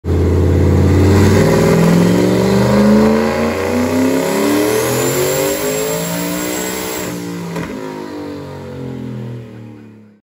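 Car engine revving hard as it accelerates through several gear changes, the pitch climbing in each gear and dropping back at each shift, then fading away.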